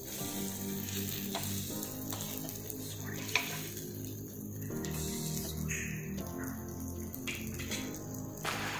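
Semolina-coated mackerel sizzling steadily as it shallow-fries in oil on a flat pan, with one sharp click about three seconds in, under soft background music.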